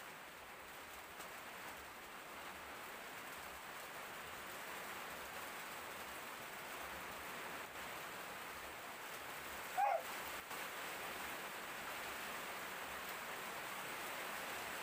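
Steady background hiss with no speech, growing slightly louder, broken about ten seconds in by one short pitched call that bends in pitch.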